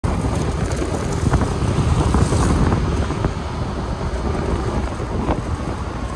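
Wind buffeting the microphone of a moving motor scooter, a steady dense rumble, with the scooter's running and road noise underneath.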